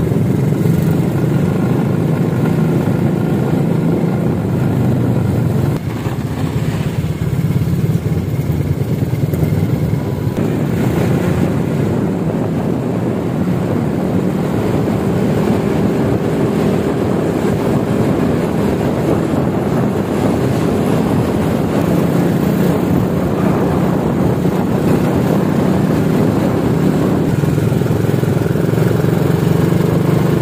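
Motorcycle engine running steadily while riding along a road, with a brief dip in loudness about six seconds in.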